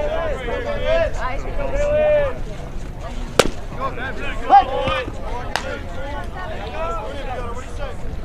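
Voices calling and chattering across a baseball field, with two sharp pops about three and a half and five and a half seconds in.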